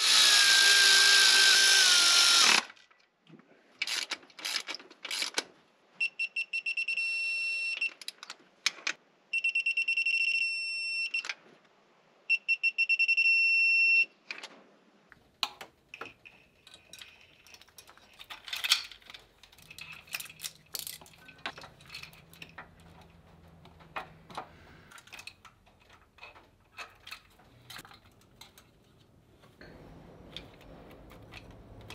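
A cordless electric ratchet running bolts in at the front of the engine, in several whirring bursts of about two seconds each. The first burst is the loudest and its pitch falls as the bolt tightens; three steadier, higher whines follow. After that come light metallic clicks and rattles of timing chain parts being handled.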